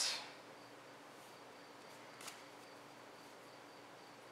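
Quiet room tone: a low steady hiss with a faint, evenly pulsing high tone, and one soft click a little past two seconds in.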